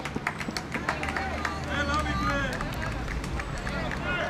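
Players calling out and shouting on an outdoor football pitch, the voices scattered and distant rather than a continuous commentary, with sharp clicks dotted through.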